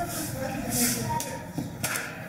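Indistinct voices in a large hall, with rustling and a short sharp knock near the end.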